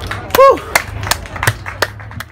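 A short, loud vocal shout falling in pitch, followed by four sharp, evenly spaced clicks about a third of a second apart, over a steady low hum.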